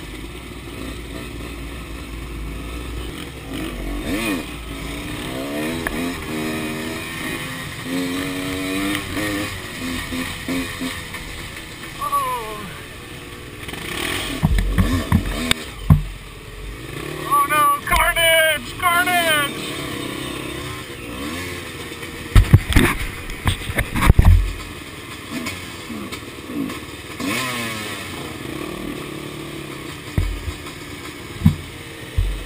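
Several dirt bike engines running at low speed close together, with the throttle opened in repeated rising revs. A few loud knocks come through in the middle of the ride.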